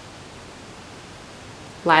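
Low, steady hiss of room tone and recording noise, with a woman's voice starting to speak near the end.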